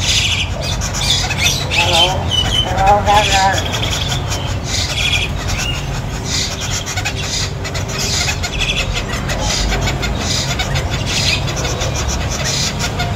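Caged birds chirping in short high bursts, repeating about once a second, with a brief squawking, voice-like call about two to three seconds in, over a steady low hum.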